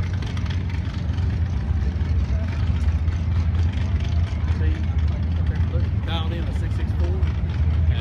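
Vehicle engines idling at a drag strip's staging area, a steady low rumble, with people talking over it.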